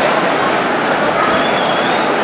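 Dense festival crowd packed around the dancers, a loud, steady din of many voices, with a brief high-pitched tone standing out near the end.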